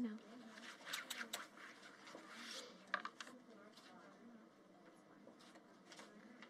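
Faint scraping and clicking of playing cards being gathered off a felt baccarat table: a few sharp clicks in the first second and a half, a short scrape about halfway, and another click soon after.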